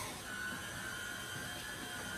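Stand mixer running steadily, its motor giving a faint, even high whine as it beats cake batter.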